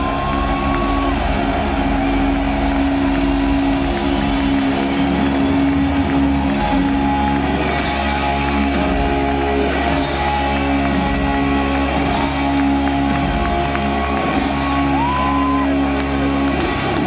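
A heavy-metal band playing live in an arena, holding a long, loud sustained guitar and bass chord with repeated cymbal crashes and a couple of rising guitar slides: the drawn-out final chord of the song.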